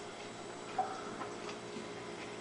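Faint, irregular small clicks of a man chewing a mouthful of raw onion, over a quiet room hum.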